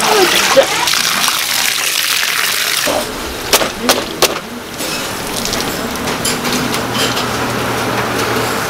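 Water gushing and streaming out of a red plastic colander of rinsed noodles as it is lifted from a basin of water and left to drain. A few sharp knocks come about three and a half to four seconds in, after which the draining is quieter.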